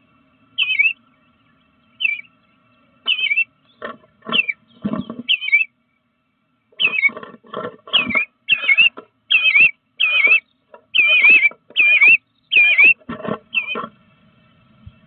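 Bluebird calling repeatedly in short, wavering notes, with a pause about halfway and the calls coming faster and louder in the second half. Each note comes with a brief scratchy rustle as the bird works at the nest-box entrance hole.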